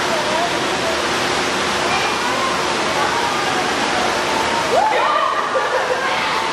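Steady rush of running water at a shallow animal touch pool, with a little sloshing as hands move in the water.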